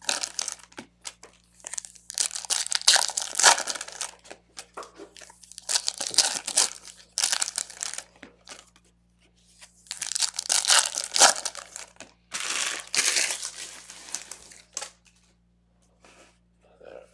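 Trading-card pack wrappers crinkling and tearing as packs are opened and the cards pulled out, in several bursts of a second or two with short pauses between them.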